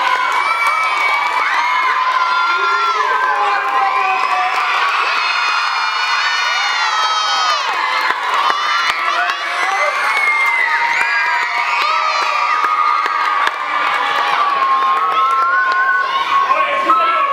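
A crowd of mostly high-pitched young voices cheering and shouting without a break, many calls overlapping and gliding up and down.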